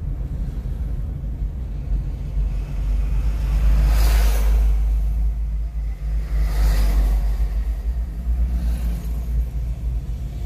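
Steady low rumble of a car's engine and tyres heard from inside the cabin while driving. Two louder rushing swells come about four and about seven seconds in.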